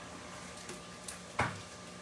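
Quiet room tone broken by a single short, dull knock about one and a half seconds in, like something bumped or set down on a hard surface.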